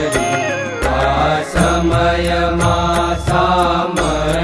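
Gujarati Swaminarayan devotional hymn, a sung prayer with instrumental accompaniment: a melodic line over a sustained low drone, with light percussion ticking along.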